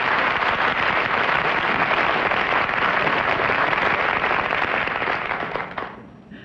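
Studio audience applauding: a dense, steady clatter of many hands clapping that dies away near the end.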